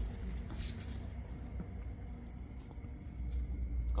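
Steady high chirring of night crickets over a low rumble, with a few faint clicks.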